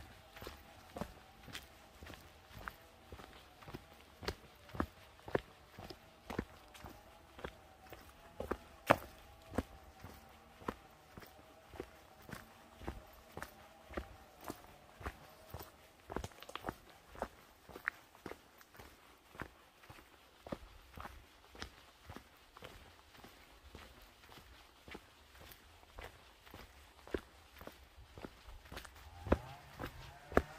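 Footsteps of a walker on a dirt-and-gravel forest track, crunching evenly at about two steps a second.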